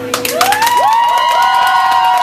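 Audience clapping and cheering, with several long rising whoops, breaking out as the song's last held note stops.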